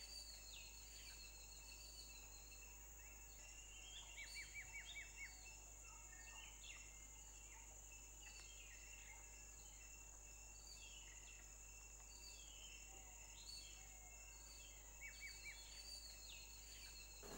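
Faint outdoor ambience: many small birds chirping over a steady high-pitched insect drone. Quick runs of short chirps come about four seconds in and again near the end.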